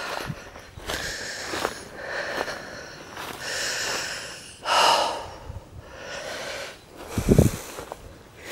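A person breathing hard while climbing a steep hillside on foot, a breath every second or so, with a low thump near the end.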